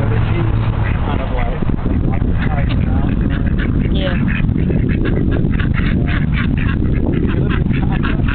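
A flock of domestic ducks quacking over and over, the quacks coming thick and fast in the second half, over a steady low rumble.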